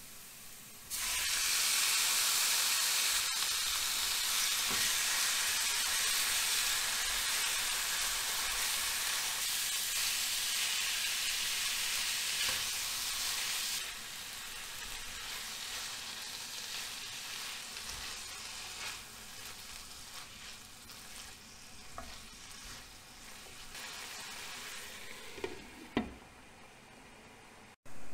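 Raw minced meat hits a hot pan of fried onions and sizzles loudly at once, about a second in. It is stirred with a spatula and keeps frying, calmer from about halfway through. Near the end a glass lid goes onto the pan with a short clink.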